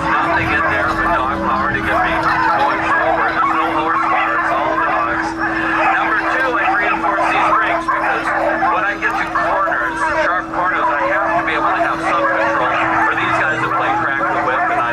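A continuous din of overlapping voices: a kennel of excited sled dogs yelping and barking as they are hitched to a four-wheeler, mixed with people chattering, over a steady low hum.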